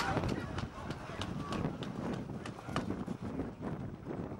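Spectators talking in a crowd, with the scattered hoofbeats of a horse ridden past close by on grass.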